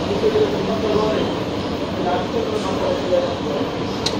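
Indistinct voices talking over a steady background hum, with a short sharp click at the very end.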